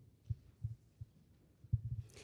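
A few dull, low thumps, irregularly spaced, from a live handheld microphone being carried and handled: microphone handling noise.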